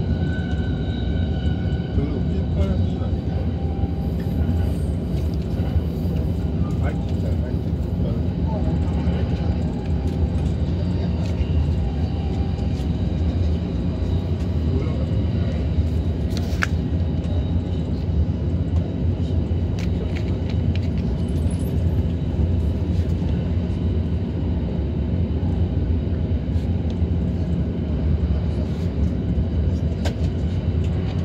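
Steady low rumble of a Tokaido Line commuter train running at speed, heard from inside a double-deck Green car: wheels on the rails and the car body, with faint higher tones in the first few seconds and one sharp click about halfway through.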